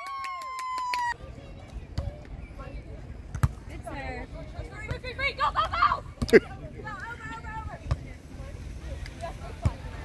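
A held shout trails off in the first second. Then come sharp smacks of a beach volleyball being hit, about three seconds apart, the one near the middle the loudest, with players' voices calling between them.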